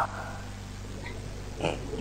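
Steady low hum on the voice-chat audio line, with one brief short sound about one and a half seconds in.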